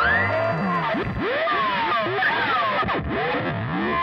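Music: a punk rock song's outro after the band drops out, made of heavily processed instrument tones that swoop up and down in pitch in overlapping, warbling glides.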